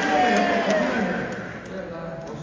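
A man's voice speaking through a stage microphone, with a drawn-out falling phrase in the first second, louder at first and quieter after about a second and a half.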